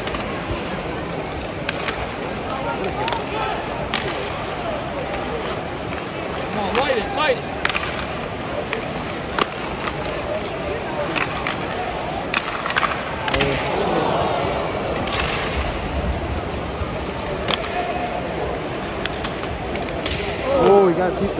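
Ice hockey heard from rinkside seats: the steady murmur of an arena crowd, broken by frequent sharp clacks of sticks on the puck and the puck hitting the boards. Scattered fan voices rise here and there.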